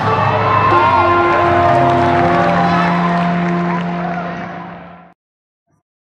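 Live rock band letting a final chord ring on electric guitars, with shouts and whoops from the crowd over it. The sound fades and then cuts off abruptly about five seconds in.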